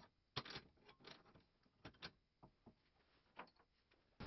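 A few faint, scattered clicks and light metallic knocks as the steel parts of a homemade circular-saw blade-lift mechanism are handled and fitted: the lead screw set in its welded pivot sleeve.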